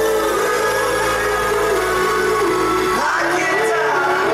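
Live pop band music from a stadium concert, with a gliding melody line over a sustained bass. About three seconds in the low bass drops out and the music shifts to a new phrase.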